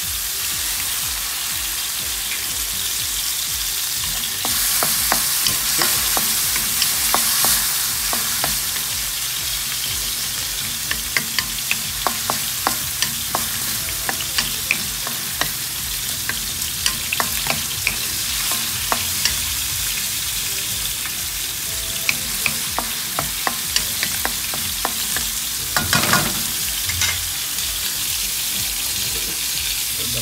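Tomatoes and onions sizzling in a hot metal wok, the hiss swelling for a few seconds soon after fish sauce is poured in. A wooden spatula then stirs the mixture, clicking and scraping against the wok many times.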